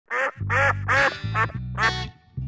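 Five duck quacks in quick succession over theme music with a steady bass line.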